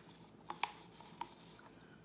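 A few light, sharp taps and clicks of plastic paint cups and a stir stick being handled while acrylic paint is layered into the cups, the loudest pair about half a second in and another just after a second.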